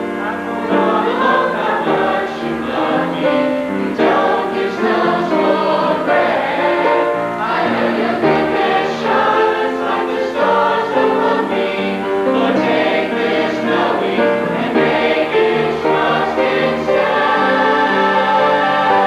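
Church youth choir singing, the voices running on without a break.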